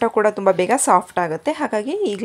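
A woman speaking without a break.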